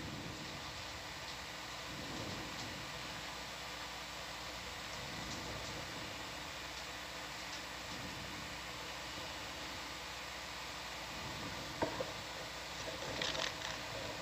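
Steady background hiss of the control-room audio feed, with a single sharp click about twelve seconds in.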